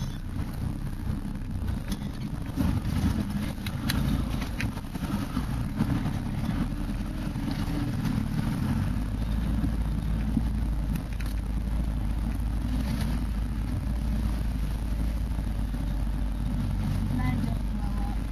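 A 4x4's engine running at low speed, heard from inside the cab as a steady low rumble, with occasional knocks and rattles as the vehicle bumps over a rough, rutted track.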